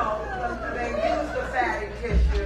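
Speech: a person talking, with some chatter.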